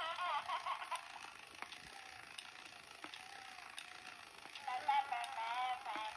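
Battery-powered crawling baby doll with a small motor and gear mechanism clicking as it crawls across a wooden floor. Its recorded baby babbling plays through a tiny built-in speaker in the first second and again near the end.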